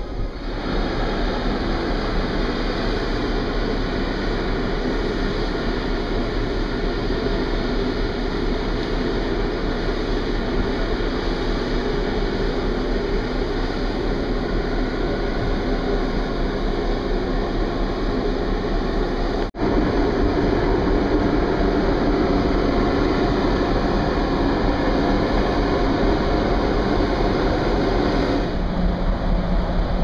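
Steady wind rushing over the microphone on an open ship's deck, with a low rumble underneath. The sound drops out for an instant about two-thirds of the way through.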